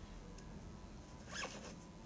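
Quiet background noise with a brief soft rustle about a second and a half in.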